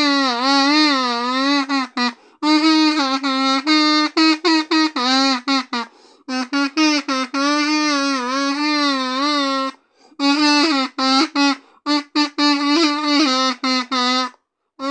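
A solo kazoo buzzing out a song melody: held notes that waver in pitch alternate with runs of quick short notes, broken by brief pauses about every four seconds.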